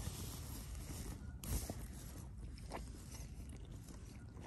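Faint chewing of a green apple sour candy stick, a few soft crunches over a low steady hiss.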